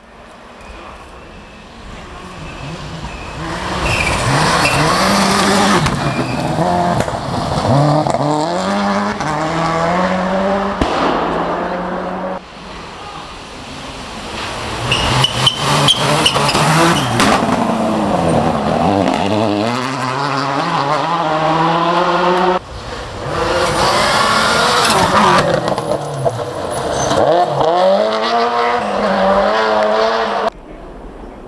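Rally cars at full throttle on a gravel forest stage, engines revving hard and dropping through gear changes as they approach and pass, with gravel spraying. The sound breaks off abruptly twice, giving three separate passes.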